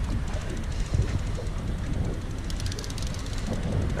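Steady low rumble of wind buffeting the camera microphone aboard a small boat on open water, with faint rapid clicking about two and a half seconds in.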